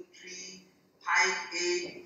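Speech: a presenter talking over a video call, with a short pause just before the middle.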